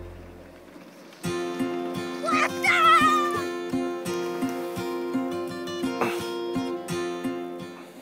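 Background music: after a near pause in the first second it comes back with steady held notes over an even beat of about three a second. About two seconds in, a high wavering sound glides up and down for about a second.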